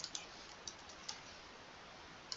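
A few faint keystrokes on a computer keyboard, typing a short word, with the clicks bunched in the first second.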